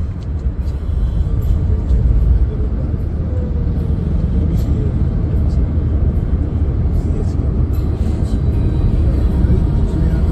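Steady low rumble of road and engine noise inside a moving car at highway speed.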